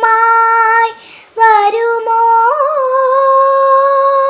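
A young girl singing solo with no accompaniment: a held note, a short break for breath about a second in, then a brief note and a long held note that wavers slightly as it begins.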